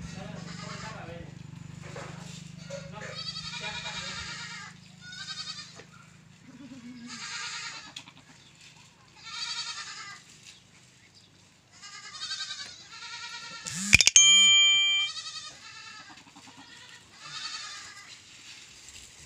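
Goats bleating repeatedly, one wavering call every one to two seconds, with a low hum during the first few seconds. About two-thirds of the way in, a sudden loud clank rings on for about a second.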